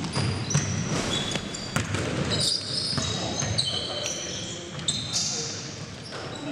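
Pickup basketball game in a gym: sneakers squeak sharply on the court many times, the ball bounces and knocks, and players' voices carry in the echoing hall.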